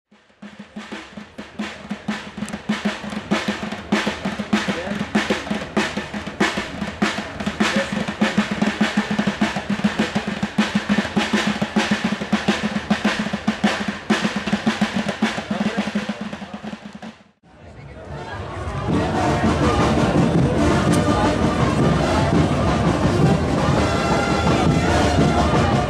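A drum played fast with the hands and fingers, a rapid stream of strikes. It stops abruptly about 17 seconds in, and after a brief gap a loud Balkan brass band starts playing.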